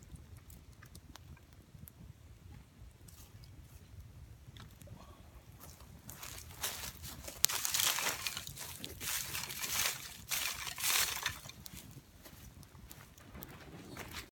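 Twig fire burning, crackling and hissing, with several louder surges of crackle about halfway through that die down near the end.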